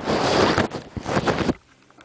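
Rustling, rumbling handling noise from the camera's microphone being covered and jostled, cutting off abruptly about one and a half seconds in.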